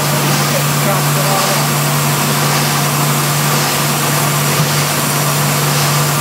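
Steady factory-floor din from plastics molding machinery: a constant low hum under a continuous broad wash of machine noise, with no break or change.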